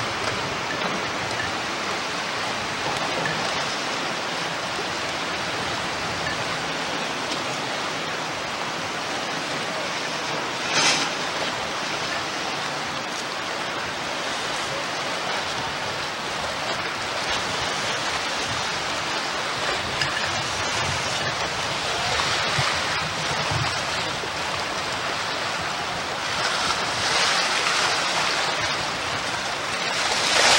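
Steady rushing noise of wind and choppy lake water on a camcorder's built-in microphone. A short louder gust comes about eleven seconds in, and stronger gusts follow in the last third.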